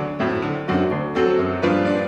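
Background piano music: a run of struck notes and chords, each starting sharply and fading.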